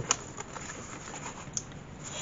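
Faint rustling and a few light taps of paper pages being handled and smoothed down by hand in a handmade paper journal.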